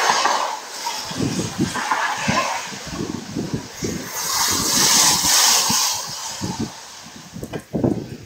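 Wind buffeting an action camera's microphone on a moving bicycle, over the hiss of tyres on a rain-wet bridge deck. The hiss swells loudest about halfway through.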